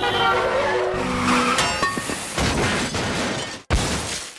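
Tense cartoon chase music, then a car crash near the end: a sudden loud impact with shattering glass. The music drops out just before the crash.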